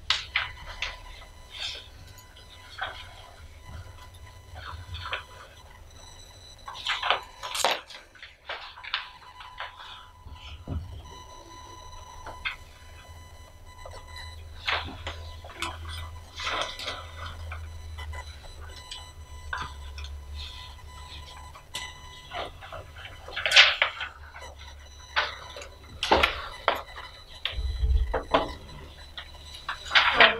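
Quiet meeting-room room tone with a steady low hum, broken by scattered short rustles, clicks and small knocks of papers being handled and pens writing on a table.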